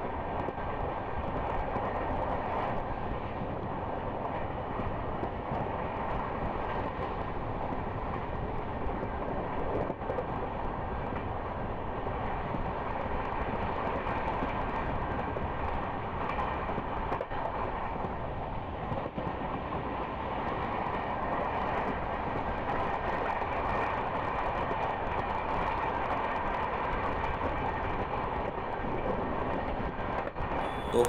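Steady running noise of a moving Indian Railways passenger train, heard from an open coach doorway: wheels on the rails and rushing air, unbroken throughout.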